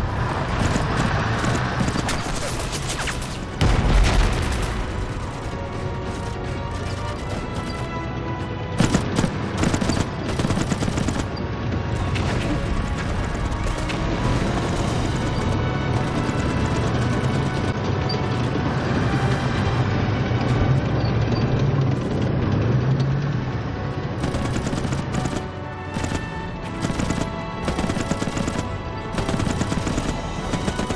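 Battle sound effects: scattered rifle and machine-gun fire, with a heavy explosion about four seconds in, mixed over a dramatic film score.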